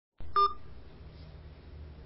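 A single short electronic beep from a voicemail recording as the message starts, followed by a faint low hum of phone-line noise.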